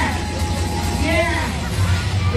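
Loud party sound system with a steady heavy bass, and voices shouting or singing over it amid crowd noise.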